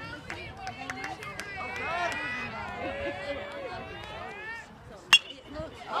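Spectators' voices chattering in the background, then a single sharp crack about five seconds in as the pitched baseball makes impact.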